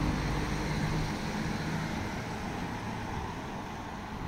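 A vehicle driving past on the street, its low engine hum fading after about two seconds, over steady outdoor traffic noise.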